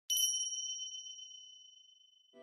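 A single high bell-like ding struck once at the start, ringing on as a clear tone that fades away slowly. It is an edited-in chime sound effect.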